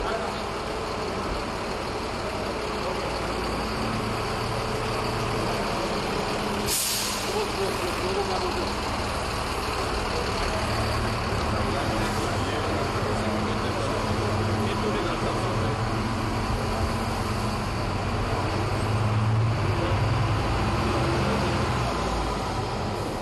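Mercedes-Benz city bus running in a factory hall, its engine a steady low hum that grows louder near the end. A short sharp hiss of compressed air comes about seven seconds in.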